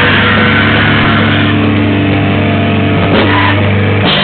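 Heavy metal band playing live, with distorted guitars and bass holding a steady, low, droning chord. A sliding drop in pitch comes about three seconds in.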